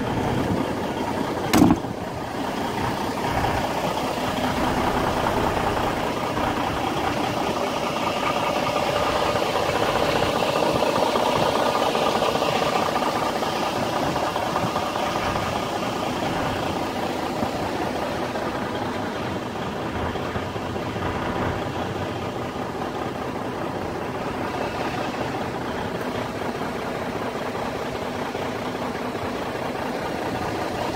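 Semi-truck's diesel engine idling steadily, heard close to the cab. There is one short, sharp knock about a second and a half in.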